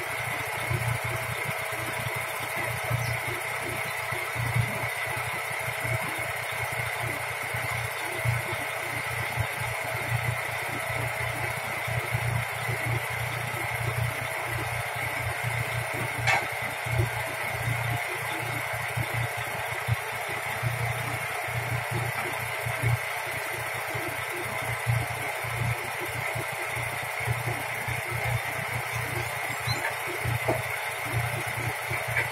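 Semi-tractor's diesel engine idling steadily, with one sharp click about halfway through.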